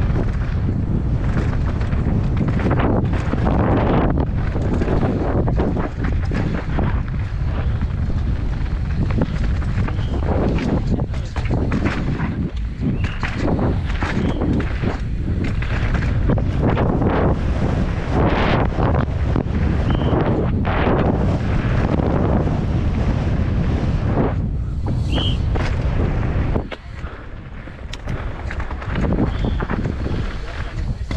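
Downhill mountain bike ridden fast down a dirt track, heard from a helmet camera: heavy wind buffeting on the microphone over the rattle and rumble of the bike on rough ground. The noise drops for a couple of seconds near the end.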